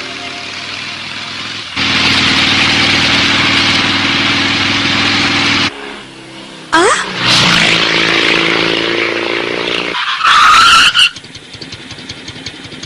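Cartoon motor vehicle engine sound effects: an engine drones steadily for a few seconds and cuts off abruptly, then engine noise starts up again. Near the end a loud, short high squeal follows, like brakes or tyres.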